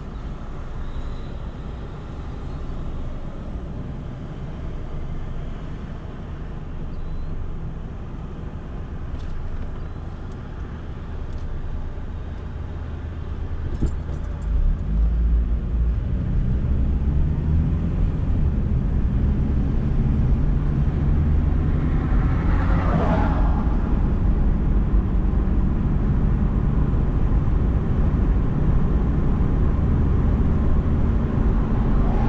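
Car engine and road noise heard from inside the car: a low, quiet idle while stopped, then louder, steady running as it pulls away and gets up to speed from about halfway through. There is a brief swell of louder noise about three-quarters of the way in.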